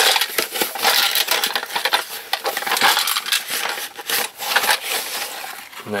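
Plastic packaging crinkling and tearing as a wrapped package is opened by hand: a dense, continuous run of crackles and rustles.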